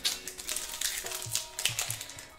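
Foil wrapper of a Panini Select football card pack crinkling and rustling in the hands as it is handled, a quick irregular run of small crackles, over faint background music.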